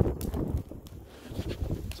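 Wind buffeting the phone's microphone in gusts, over a wood fire burning in a metal fire pit with a few sharp crackles.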